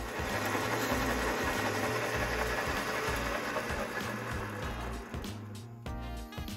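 Metal lathe running while a cutting tool works a brass bar: a steady hiss of cutting that dies away near the end, with background music underneath.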